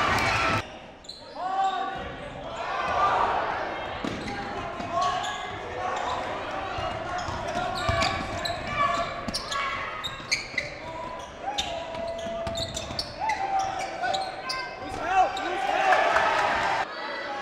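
A basketball bouncing on a hardwood gym floor as it is dribbled, with sharp repeated knocks and indistinct shouting voices of players and spectators echoing in the gym.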